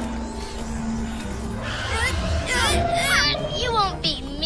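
Small cartoon bird chirping in quick rising and falling tweets, starting about halfway through, over background music.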